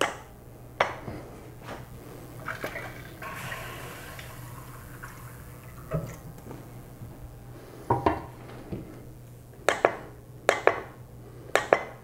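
Light knocks and clinks of kitchen things being handled on a countertop, a metal pouring pot and glassware among them: a dozen or so short sharp strikes, scattered, then coming in quick pairs near the end.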